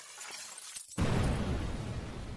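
Title-animation sound effect: a crackling, glass-like shattering through the first second, then a sudden deep boom about a second in that slowly dies away.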